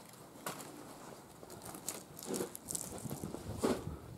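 Faint, irregular crunching and rustling of footsteps and movement on a debris-strewn floor, a few scattered sharper clicks among them.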